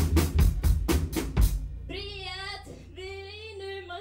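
A live rock band's drum kit plays a fast fill of snare and bass drum hits that speeds up and stops about one and a half seconds in, leaving a low bass note ringing. A woman then sings short, wavering held notes.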